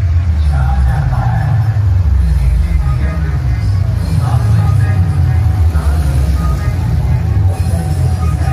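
Loud music blasting from a large street sound-system speaker stack, dominated by a heavy pulsing bass about twice a second, with a voice over it.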